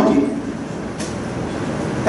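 Steady low rumbling background noise of the hall in a pause between spoken phrases, with one faint click about a second in.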